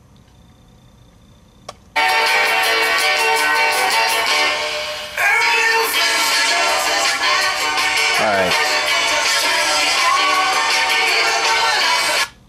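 After about two seconds of quiet with a faint click, a rock song with vocals starts and plays loudly. It is a cassette recording digitised at a level kept below clipping, so it plays back undistorted through the computer's speakers.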